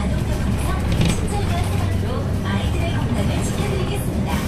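Hyundai BlueCity low-floor city bus heard from inside the cabin while driving, with a steady low engine and road rumble. Faint voices sit over it.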